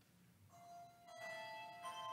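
Handbell choir starting a piece: a few handbell notes struck in turn from about half a second in, each ringing on and overlapping the next.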